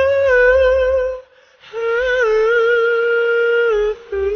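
A man's wordless singing: two long held notes with a wavering vibrato, the second starting after a short pause about a second and a half in.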